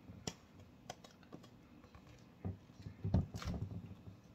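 Light clicks and taps of a spatula against a stainless steel mixing bowl and glass loaf pan as thick batter is scraped out and spread, with a denser run of soft knocks and scrapes about two and a half seconds in.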